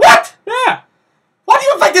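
A man imitating a dog's bark: two short, loud barks, the second rising and falling in pitch.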